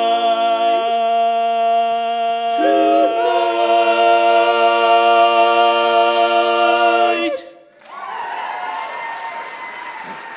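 Male barbershop quartet holding the song's final chord, a long ringing four-part close-harmony chord whose inner voices shift twice early on before all four cut off together about seven seconds in. Audience applause follows right after.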